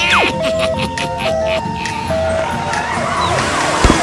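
Cartoon two-tone hi-lo siren, the high and low notes alternating about once a second over upbeat backing music of a children's song. The siren stops about two and a half seconds in. A quick falling whistle sounds at the very start.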